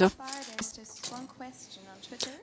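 Quiet, indistinct speech: a voice talking softly in a hall, well below the level of the main speech around it.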